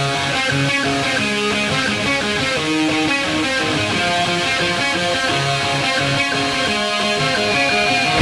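Guitar music: a run of picked notes changing every fraction of a second, at a steady level.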